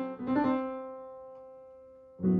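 Piano playing a few quick notes, then a held chord that slowly fades away over about a second and a half.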